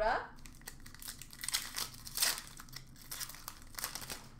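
Crinkling of an Upper Deck hockey card pack's wrapper as it is handled and torn open, in irregular crackles that are loudest a little past halfway.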